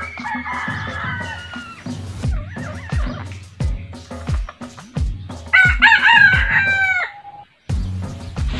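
Red junglefowl rooster crowing twice: a fainter crow at the start and a louder one, the loudest sound here, about five and a half seconds in.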